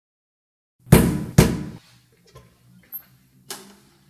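Two loud knocks on a dormitory door, about half a second apart, about a second in; near the end a sharp clack as the door's small metal viewing flap is opened.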